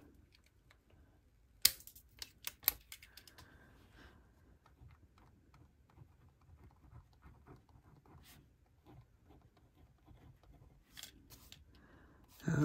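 A few sharp clicks, then the faint scratching of a Pentel EnerGel Clena gel pen writing a short line on paper, with a couple more clicks near the end.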